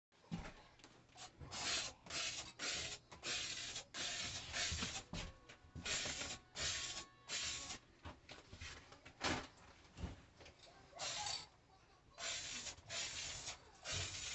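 Aerosol can of hammered-finish spray paint sprayed in a series of short hissing bursts, each under a second, coming thick and fast at first, thinning out in the middle and picking up again near the end.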